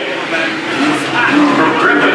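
Cars from the 4- and 6-cylinder class, a Honda Civic and a Dodge Neon, racing side by side on a dirt oval, their engines running at speed as they pass. Voices are mixed in with the engine sound.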